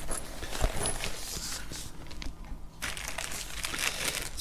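Quiet rustling and handling of a fabric carry case and a plastic bag holding a cable, with a soft thump about half a second in.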